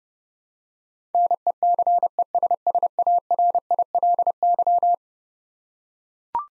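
Morse code tone at one steady pitch, keyed at 30 words per minute, spelling out the word "necessarily" in dots and dashes. It starts about a second in and stops about a second before the end.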